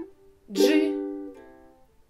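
Ukulele strummed once on a G chord, the chord ringing and fading for about a second and a half. The previous chord is damped right at the start.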